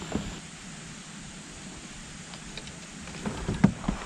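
Faint open-air background, then a quick cluster of sharp knocks and clicks near the end from a fishing rod and reel being handled in a plastic kayak as the rod is swung up.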